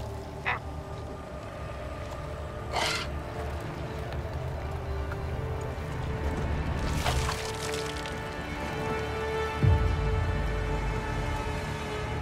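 Low film-score drone with a long held note, broken by two short, harsh squawks from a ragged undead seabird, about three and seven seconds in, and a deep boom near the end.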